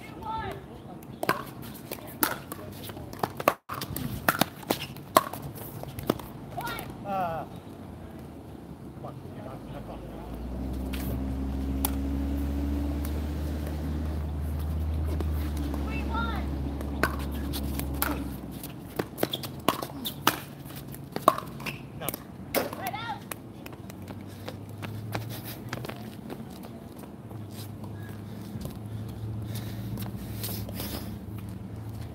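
Pickleball paddles striking a plastic ball in a rally: sharp pops at irregular intervals, often less than a second apart. A steady low rumble rises about a third of the way in and fades a little past halfway.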